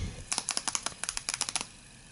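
A rapid run of about a dozen light clicks or taps, some eight to ten a second, in short clusters that stop about one and a half seconds in.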